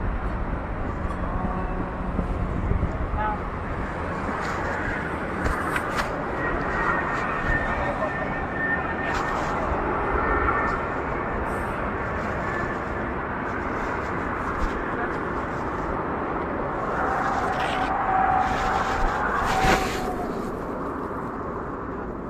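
Steady outdoor background noise with indistinct voices, a hum of vehicles and wind rather than any single clear event.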